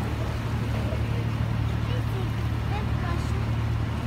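Sightseeing boat's engine running with a steady low hum, with faint chatter from passengers on deck.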